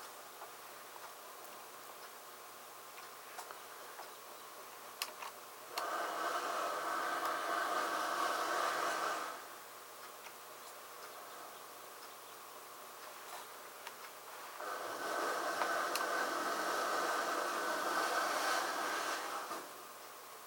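A steady mechanical buzz, like a small electric motor running, heard twice: about three and a half seconds long a few seconds in, then about five seconds long in the second half.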